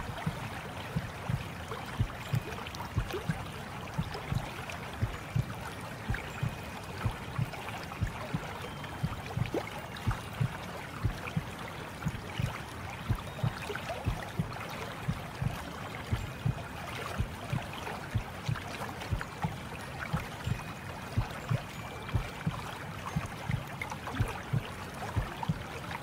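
Water running and lapping, with irregular soft low knocks several times a second over a steady hiss. Faint brief high tones sound now and then.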